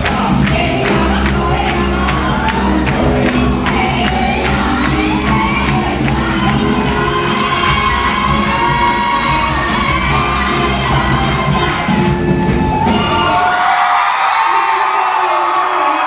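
Loud club music playback with a heavy bass beat and a crowd cheering over it; the music cuts out about three-quarters of the way through, leaving the crowd cheering and whooping.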